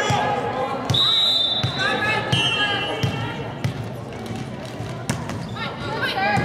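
A volleyball bounced several times on a hardwood gym floor, low thuds about two-thirds of a second apart, as the server prepares. A referee's whistle sounds once about a second in, over spectators' voices and cheers.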